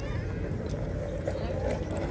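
A metal teaspoon scraping and clicking faintly inside a small glass jam jar, over a steady low rumble of street traffic and faint background voices.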